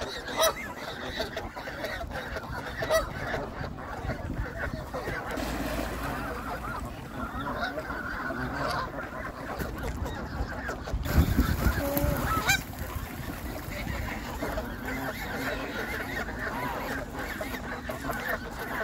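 A group of Canada geese honking, many short calls overlapping and going on without a break, as the birds fight. A louder rush of low noise comes about eleven seconds in and lasts a second or so.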